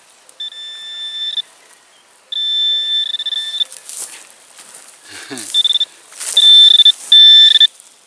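Handheld metal-detecting pinpointer sounding its steady high-pitched alarm tone in repeated stretches, signalling metal close to its tip. The tone is loudest in three short bursts near the end, with faint rustling of grass and soil between the tones.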